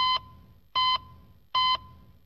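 Heart-monitor style beep sound effect: three short, identical electronic beeps at an even pace of about one every 0.8 seconds, like a steady pulse.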